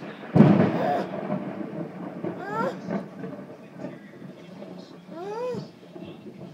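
A sudden loud thunderclap about a third of a second in, rumbling away over the next second or two. Later a young child's voice gives two short high rising-and-falling calls.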